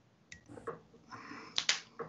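Scissors snipping off a feather stem at the fly-tying vise: a few small clicks and a soft rustle, with the sharpest snip about one and a half seconds in.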